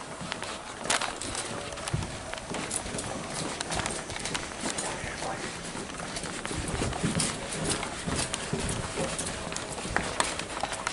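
Hurried footsteps on hard floors, a run of irregular thumps and knocks, mixed with the rustle of clothing and a handheld camera jostling against the body.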